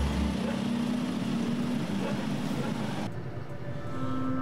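Road traffic: passing vehicle engines and road noise, breaking off abruptly about three seconds in.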